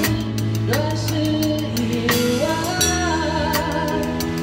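Live band playing a pop ballad: a drum kit keeping time with regular cymbal and drum strokes under a sung melody and a steady bass line.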